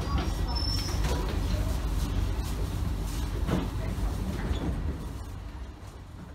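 Inside a Singapore MRT C751B train car standing at the platform, its air conditioning running with a steady low hum, with scattered clicks and faint voices. The sound fades out near the end.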